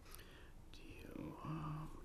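Faint, low speech: someone talking quietly, away from the microphones.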